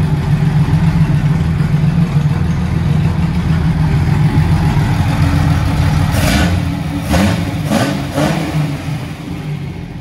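1973 Datsun 240Z's inline-six, fed by triple Weber carburettors, running steadily and loudly just after its first start on the new carbs, with no finished exhaust fitted behind the header. About six seconds in the throttle is blipped a few times, then the sound eases off toward the end.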